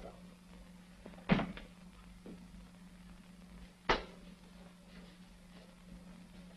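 Two short knocks about two and a half seconds apart, the second sharper, over a steady low hum.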